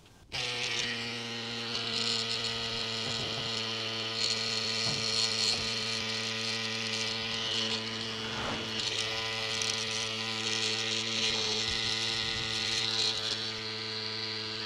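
CYCPLUS Tiny Pump electric mini bike pump switching on about a third of a second in and running with a steady motor hum, pumping up a road bike tyre.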